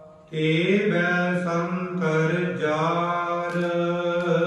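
Sikh Gurbani kirtan: a male voice sings a long, drawn-out devotional phrase over a steady instrumental drone. The phrase begins after a short breath-pause near the start, sliding up into held notes.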